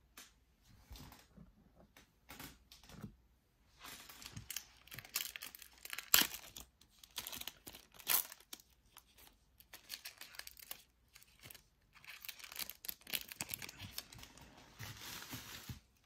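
Shiny plastic wrapper of a trading-card pack crinkling and tearing open in handled bursts, with a couple of sharp crackles about six and eight seconds in.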